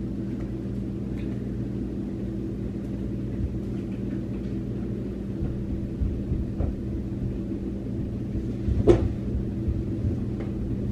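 Steady low electrical hum with a few faint clicks and knocks, and one sharper knock about nine seconds in.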